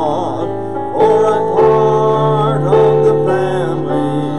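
A gospel chorus sung with instrumental accompaniment, the voice holding long gliding notes over a steady low note.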